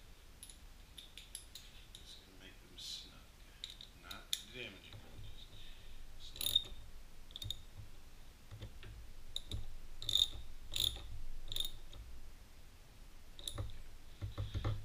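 Irregular small metallic clicks and taps of a hand tool on a motorcycle steering damper's mounting bolts as they are snugged up, the clicks coming thicker in the second half.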